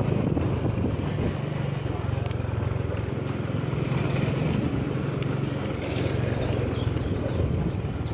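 Motorcycle engine running steadily at low road speed, its tyres rumbling over cobblestones, with wind rushing on the microphone.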